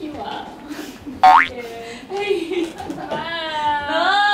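Excited vocalising: a short, sharp squeal that rises steeply in pitch about a second in, then a long drawn-out exclamation near the end.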